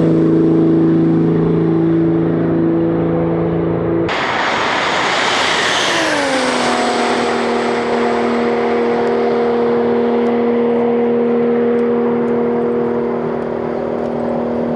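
Tuned Toyota GR Supra's engine running at a steady, high pitch at speed on a top-speed run, with loud rushing wind and road noise. About six seconds in the engine note glides down and then holds steady again.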